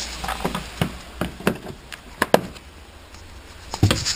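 Irregular light taps and knocks, about ten of them, from handling around the car's rear hatch and cargo-area trim. The loudest come a little past the middle and just before the end.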